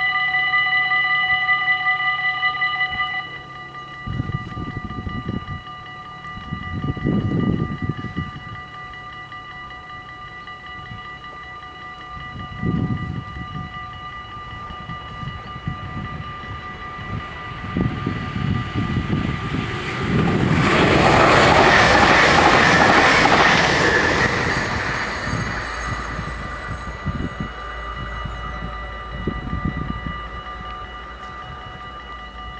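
Dutch level-crossing bells ringing steadily, then stopping about three seconds in as the barriers finish lowering. Later an SNG electric sprinter train approaches, passes the crossing loudest about two-thirds of the way through, and fades away.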